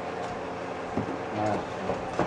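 Ground beef frying in a non-stick pan, a low steady sizzle, with a quiet voice about a second in.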